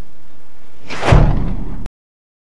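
End-card sound effect: a whoosh that swells into a deep boom about a second in, then cuts off abruptly just before the end.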